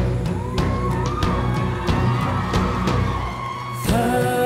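Live Celtic band music in an instrumental passage: drum strikes about every two-thirds of a second over a low held drone, with a long high held note above them. Just before the end the music changes into the next sung section.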